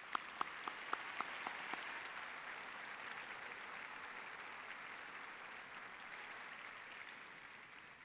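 Audience applauding, with a man's close, sharp hand claps near the microphone at about four a second over the first two seconds. The applause fades near the end.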